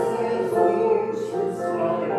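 Voices singing a slow hymn, the final stanza of the sending hymn, in long held notes.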